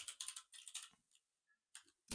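Faint, rapid typing on a computer keyboard, clicking several times a second, which stops a little under a second in.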